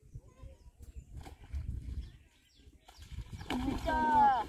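Water splashing near the end as a hooked rohu thrashes at the surface, with a loud call falling in pitch over it. A low rumble runs underneath.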